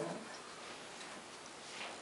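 Quiet room tone with a few faint ticks, as the end of a spoken question dies away.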